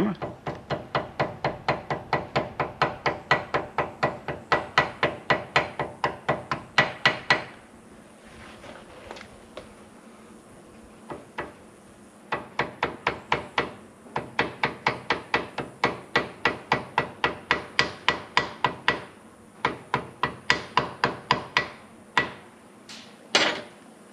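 Ball-peen hammer tapping gasket paper against the edge of a tractor thermostat housing held in a bench vise, punching out the bolt holes of a hand-made gasket. Quick, ringing taps at about four a second, in two long runs of several seconds with a pause between, then a few short bursts near the end.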